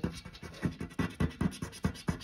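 Scratch-off coating being rubbed off a paper lottery scratch card by hand, in quick repeated strokes, about six a second.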